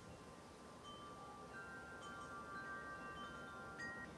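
Wind chimes ringing faintly: scattered, overlapping high notes struck at irregular moments, each ringing on for a second or more, over a low hiss.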